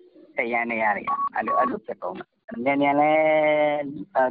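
A person speaking over a telephone line, the voice thin with its highs cut off, in short phrases and then one long drawn-out syllable near the end.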